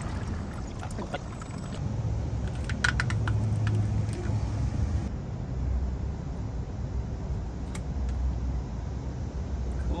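A steady low rumble with a few light clicks from handling a cut heater hose and a pair of scissors over a plastic bucket.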